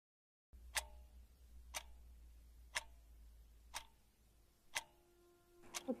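A clock ticking steadily, one tick a second, six ticks in all, starting about half a second in over a low steady hum.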